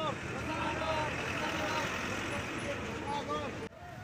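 A crowd of protesters shouting slogans together, many voices over a steady street-noise background; the sound drops abruptly near the end.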